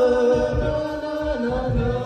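An a cappella group singing held chords in close harmony, the parts moving to new notes now and then, over a steady beatboxed beat.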